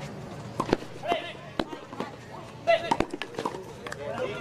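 Tennis balls struck by rackets in a quick doubles rally on clay: several sharp hits at uneven intervals, with brief shouts from the players between them.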